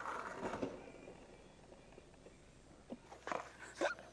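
Quiet outdoor background with a few faint knocks and short rustling clicks about three and a half seconds in, typical of a handheld camera being passed over and handled.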